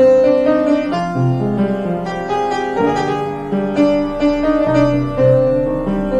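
Upright piano playing a melody in the right hand over chords in the left, notes struck at a moderate pace and left to ring.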